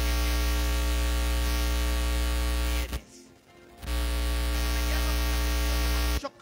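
Electronic keyboard holding a steady sustained chord, with a strong low hum underneath. It cuts out abruptly for about a second halfway through, then comes back.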